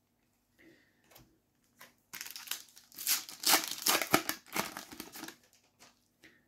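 Foil trading-card packet being torn open and crinkled: a few faint clicks of cards being handled, then crinkling and tearing from about two seconds in until shortly before the end.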